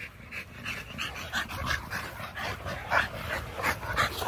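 American Bully dog panting close by, a quick run of short breaths about four a second.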